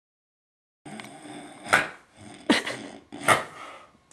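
A dog barking three times, a little under a second apart, loud and sharp.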